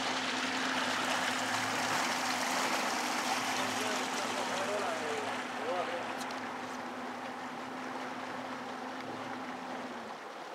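A boat's motor running with a low steady hum, under the rush of water along the hull, as the boat moves slowly through the water; the sound eases off gradually over the second half.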